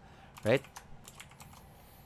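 Quiet typing on a computer keyboard: a short run of quick key taps lasting under a second.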